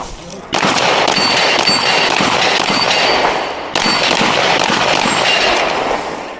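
Pistol shots fired in quick succession at a steel plate rack. From about half a second in they run together into a continuous loud noise, with brief high ringing tones between them.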